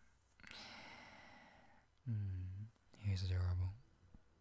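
A man's voice without words: a long breathy exhale that fades away, then two low hummed "mm" sounds, the second louder.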